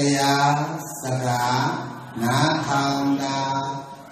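A man's voice chanting Buddhist Pali verses in long notes held at an even pitch. There are two phrases, with a short breath-pause between them.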